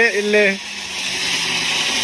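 A small novelty 'dancing' ground firecracker hissing steadily as it burns, throwing out a red flare and smoke. A voice is heard briefly at the start.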